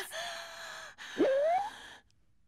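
Cartoon character voices gasping: a breathy, held voiced sound for about a second, then a loud gasp that rises sharply in pitch.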